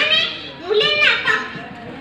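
A child speaking into a microphone in short phrases, with a brief pause about half a second in, trailing off near the end.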